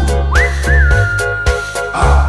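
Instrumental passage of a song: bass and drums under a high whistled melody that slides up, wavers briefly and then holds one long note.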